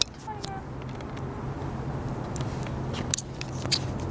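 A steady low mechanical hum with scattered light clicks.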